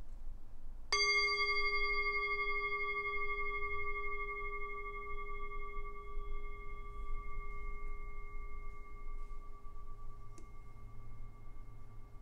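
A meditation bell struck once about a second in, ringing with a clear, sustained tone that fades slowly over about ten seconds. It signals the end of a period of silent prayer.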